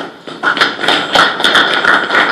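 A group of people applauding. A few scattered claps become dense, steady clapping about half a second in.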